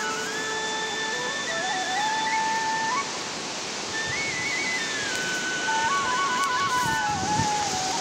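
A slow flute melody of long held notes stepping up and down, over a steady rushing noise.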